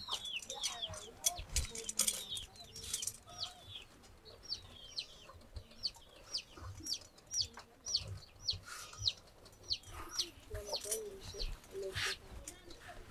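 Birds chirping outdoors: a steady run of short chirps, each falling in pitch, a little under two a second, with scattered faint clicks and rustles.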